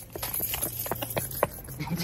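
A quick, uneven run of sharp taps, about six in a second and a half, under faint voices.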